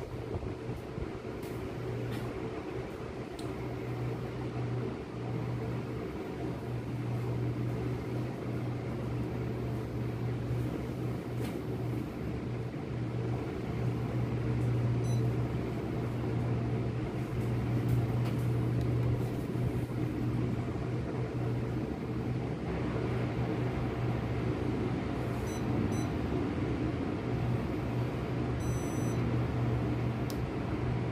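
Sharp J-Tech inverter split-type air conditioner running: a steady low hum under an even wash of air noise.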